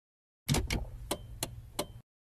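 VHS cassette being pushed into a VCR: five sharp mechanical clicks at uneven spacing over a low hum, starting about half a second in and cutting off abruptly.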